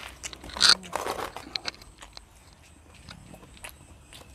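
People eating close to a clip-on microphone: chewing and crunching, with a sharper, louder crunch just under a second in and small clicks of plates and utensils, quieter in the second half.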